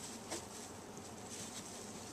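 Faint steady hiss with light scuffling of young border collie puppies moving about on a fleece blanket and wood shavings.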